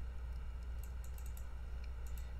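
Faint clicking of computer controls as map counters are moved on screen: a few light, scattered clicks over a steady low hum.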